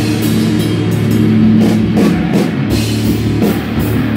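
Rock band playing live: electric guitars and bass guitar with a drum kit, cymbals struck about three times a second.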